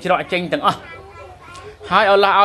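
A man's speech that breaks off about a second in. Fainter children's voices carry on in the background during the pause.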